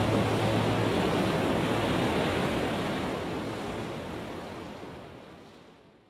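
Steady rushing of waves and wind, fading out over the last few seconds, with a low hum that stops about a second in.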